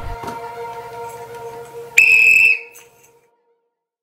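One loud blast of a sports whistle about two seconds in, lasting about half a second, over a faint steady tone.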